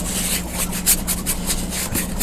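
A wide paintbrush scrubbing back and forth over a textured canvas panel, working vegetable glycerin into the surface, in a quick run of short brushing strokes, several a second. A faint steady low hum lies underneath.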